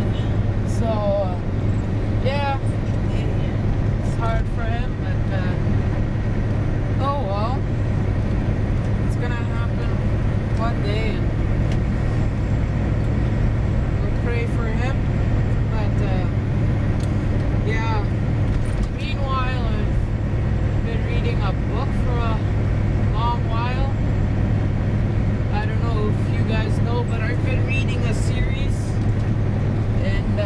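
Steady low drone of a semi-truck's diesel engine and road noise heard inside the cab at highway speed, with faint, scattered voices in the background.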